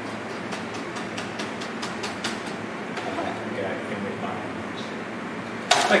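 Chef's knife chopping a garlic clove on a plastic cutting board: a quick run of light taps, about five a second, for the first couple of seconds, then a few scattered taps.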